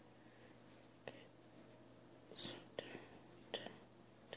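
Pencil scratching on paper in a few short, faint strokes, the longest about two and a half seconds in, over a low steady hum.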